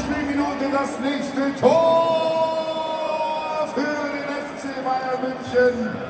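Football stadium after a goal: long, drawn-out voice calls over the public address and the crowd. One call starts about two seconds in and is held for about two seconds, and others follow.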